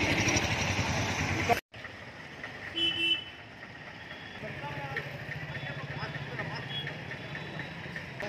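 Street traffic noise with motorcycle engines idling, and a short horn beep about three seconds in. The sound drops sharply near two seconds, where one clip cuts to the next, and is quieter after that, with a steady low engine hum in the later part.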